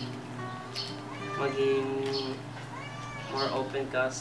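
Several short meow-like cries, each rising and falling in pitch, over background music with long held notes.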